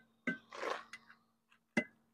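A few faint clicks and a short rustle from an aluminium boarding ladder being pulled down and set in place on a boat's transom.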